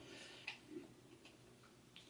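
Near silence: room tone, with two faint short ticks about half a second in.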